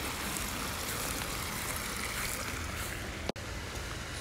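Steady splashing of water pouring from a raised spa's spillways into a swimming pool, broken off by an abrupt cut a little after three seconds.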